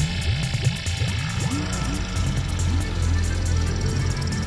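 Electronic ambient dub track on analogue synthesizers: a low synth voice makes a quick run of short rising, chirping glides over a steady bass drone, with fast ticking percussion high above.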